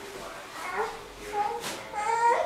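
A newborn baby fussing: several short, high-pitched cries in quick succession.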